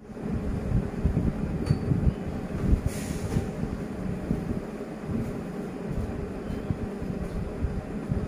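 Steady low rumbling background noise with a few faint clicks, and no speech.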